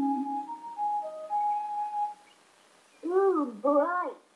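Cartoon soundtrack music: a few sustained melodic notes that fade out about two seconds in. Near the end come two short, gliding voice-like sounds.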